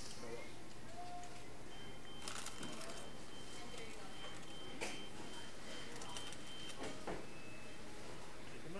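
Quiet restaurant room sound with a few brief crackles of paper nugget bags being handled, and a faint steady high-pitched tone running through most of it.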